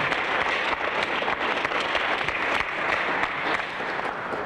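Audience applauding: many hands clapping at once in a steady patter, easing off slightly near the end.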